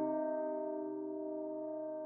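A piano chord in the score rings on and slowly dies away.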